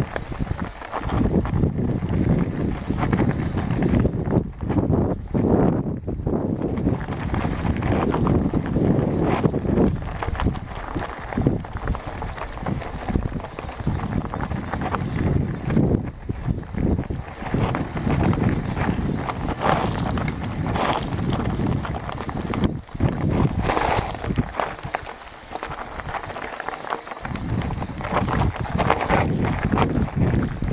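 Mountain bike rolling downhill over loose gravel and stones: tyres crunching and the bike rattling in irregular knocks, under heavy wind rumble on the camera microphone.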